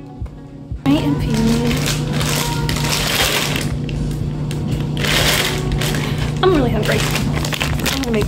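Plastic packaging rustling and crinkling in two bursts, about two and five seconds in, over a steady low hum.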